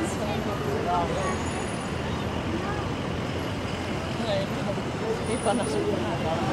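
City street ambience: steady traffic noise with the scattered, indistinct chatter of a nearby crowd.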